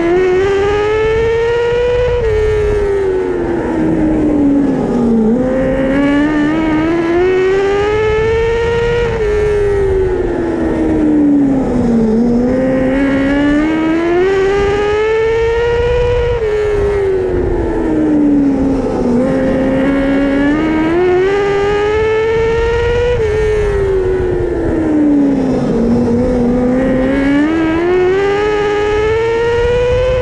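Winged A-Class sprint car's engine heard from inside the cockpit at racing speed. Its pitch climbs along each straight, then falls back into each turn, in a cycle about every seven seconds: four laps of a dirt oval. The engine noise sits over a steady rumble.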